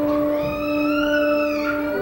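Church organ holding a steady chord, with a young child's single long, high cry over it that rises and then falls in pitch about half a second in.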